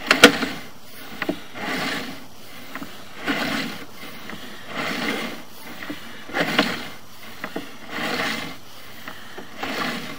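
Sewer inspection camera's push cable being pulled back out of the line in steady strokes, a rubbing, scraping swell about every second and a half with small clicks of the cable and reel between them.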